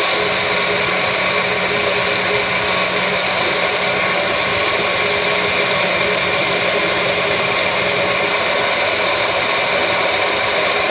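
Magic Bullet blender motor running steadily at full speed, its blade churning a thick smoothie in the cup pressed down onto the base.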